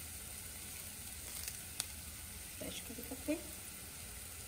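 Sliced onions frying in hot oil in an enamelled cast-iron pot, a steady soft sizzle, as curry leaves go into the oil. A single sharp click comes just under two seconds in, and a few faint short sounds follow around three seconds.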